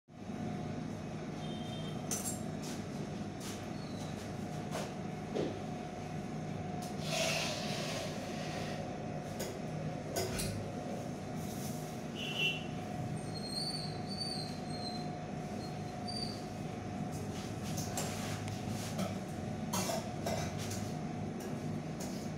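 Steady low hum with a faint held tone, broken by scattered light clicks and a few brief high squeaks as a cake turntable is turned by hand.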